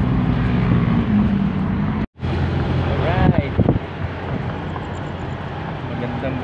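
Engine and road noise inside a moving vehicle, with a steady low engine hum. The sound cuts out for a moment about two seconds in, and a short rising-and-falling voice-like sound follows about a second later.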